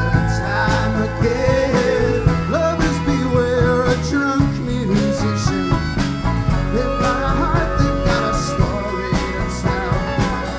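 Live folk band playing with fiddle, banjo, acoustic guitar, electric bass and drum kit, over a steady drum beat.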